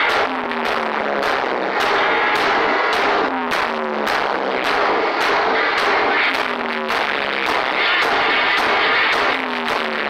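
Live noise-rock drone: heavily distorted electric guitar through effects, a dense wash of noise pulsing evenly about twice a second, with short sliding pitched tones cutting through.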